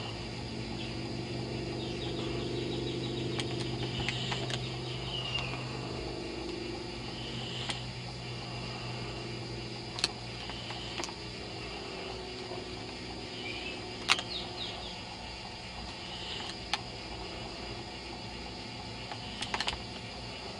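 Outdoor night ambience: scattered short, high chirps of insects over a steady low hum that fades after about six seconds, with a few sharp clicks, the loudest about fourteen seconds in.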